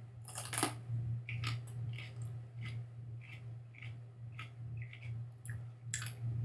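A man biting into a raw green chile pod with a crisp crunch, then chewing it with a steady run of short crunches, about two or three a second.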